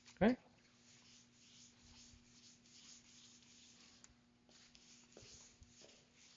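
Whiteboard eraser rubbing dry-erase marker off a whiteboard in a run of wiping strokes, with a short pause about four seconds in.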